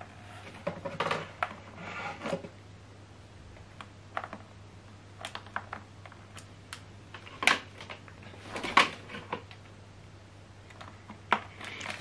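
Plastic clicks and rustles of an optical audio cable plug being worked into the optical input on the back of a JBL Bar 300 soundbar, with the cable and hands rubbing against the casing. The clicks come irregularly, the loudest about two thirds of the way through.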